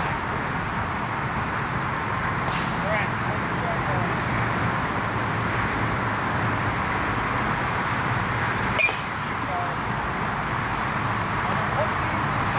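A baseball bat strikes a pitched ball once, a sharp crack about nine seconds in, over steady outdoor background noise. A shorter, thinner rattle comes near three seconds in.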